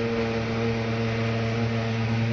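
Mosquito fogging machine running, a steady droning hum.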